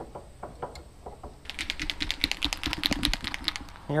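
A paint marker being shaken, its mixing ball rattling in a fast run of sharp clicks, about a dozen a second, for roughly two seconds from about one and a half seconds in.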